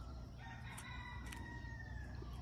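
A rooster crowing faintly, one long drawn-out call of nearly two seconds.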